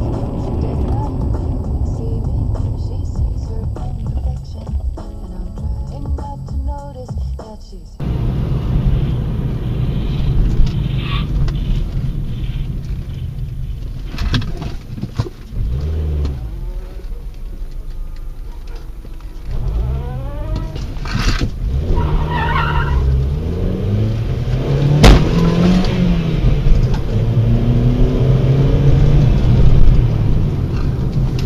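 Car engine and road noise recorded inside cars by dashcams. The engine's pitch rises and falls several times in the second half, and there is one sharp knock late on.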